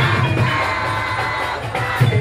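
Procession drum band playing a pulsing beat, with a crowd cheering and shouting over it.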